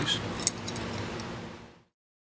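A single light click about half a second in, followed by a few fainter ticks over quiet room tone, all fading out to silence near the end.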